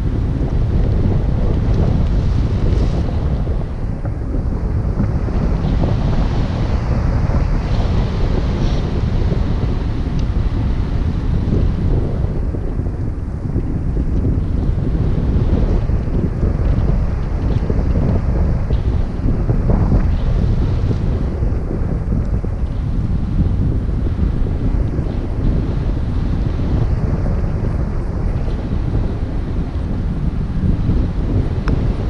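Loud, steady wind rushing over the camera's microphone from the airflow of a tandem paraglider in flight.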